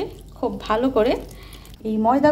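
A woman speaking, with a faint trickle of water being poured from a metal pot into a bowl of flour for dough.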